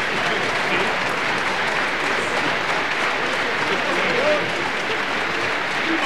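Concert audience applauding steadily, with a few voices calling out above the clapping.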